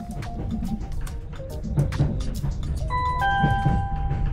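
Onboard public-address chime on a Class 745 train: a two-note electronic ding-dong, higher note then lower, near the end, signalling an announcement is about to be made. It sounds over the steady low rumble of the train running.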